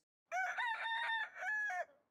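A rooster crowing once, a cock-a-doodle-doo of about a second and a half that ends on a long held note.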